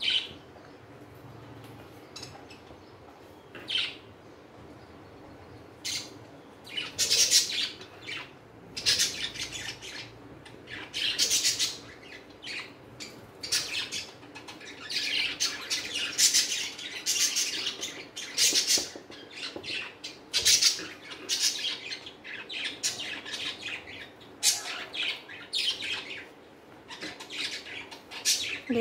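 Tailor's chalk drawn across cotton fabric in a series of short scratchy strokes, tracing a pattern's outline. There is only one stroke in the first several seconds, then a stroke every second or so.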